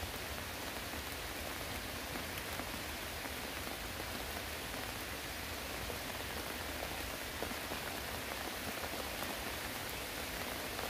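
Steady rain falling: an even hiss with a few faint, scattered drop ticks.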